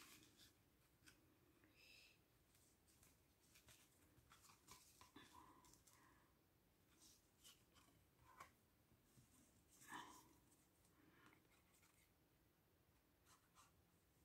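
Near silence, with faint scattered rustles and light taps of card stock being pressed flat and handled by hand.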